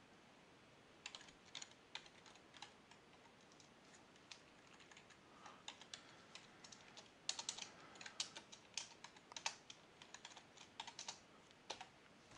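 Computer keyboard typing: faint, irregular keystrokes that begin about a second in and come faster and closer together in the second half.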